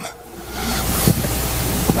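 A steady rush of air across a handheld microphone, with a low rumble underneath, starting about half a second in: breath blowing onto the mic held close to the mouth.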